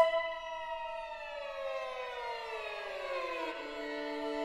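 String quartet opening with a sharp accented attack on high sustained notes, then all voices sliding slowly downward together in a glissando and settling on a new held chord about three and a half seconds in.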